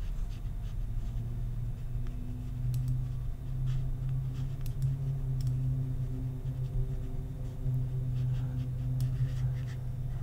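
Light scratching and a few scattered clicks from a computer mouse being dragged and clicked, over a steady low hum.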